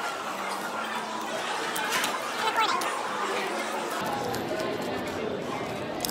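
Background chatter of many voices in a large indoor hall, with no clear voice standing out.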